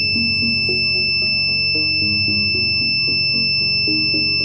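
Electronic buzzer of a homemade clothes-peg door alarm sounding one steady, high-pitched continuous tone, triggered and left running while the alarm is tested. Background music with stepping notes plays underneath.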